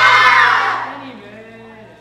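A group of young voices shouting out together in one loud cry that peaks at the start and dies away within about a second.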